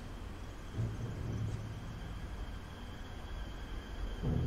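Low, steady rumble of ambient sound from a TV drama scene's soundtrack, with no speech, swelling slightly about a second in.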